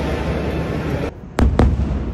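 Steady background noise, then a sudden drop as the scene changes. A little over a second in, two aerial fireworks shells burst about a quarter of a second apart with loud, sharp bangs.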